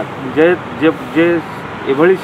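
A man speaking in a short interview answer, broken into short phrases, over a steady background noise.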